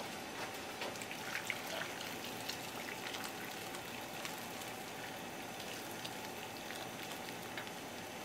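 Boiling water poured from a kettle onto pieces of yellowtail head in a stainless steel bowl, a steady splashing with many small ticks as the bowl fills. This is the scalding step that loosens scales and blood from the fish.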